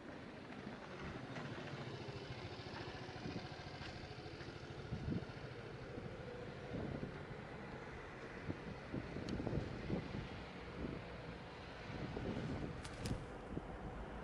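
Steady outdoor city-street background with the rumble of motor traffic, a little fuller in the first few seconds, and a few soft low knocks scattered through the second half.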